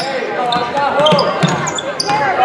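A basketball being dribbled on a hardwood gym floor, with the squeak of players' sneakers on the court, echoing in a large gym.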